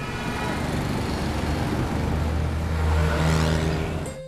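Road traffic: cars and utility vehicles driving past close by, with tyre and engine noise and one engine's hum growing louder in the second half.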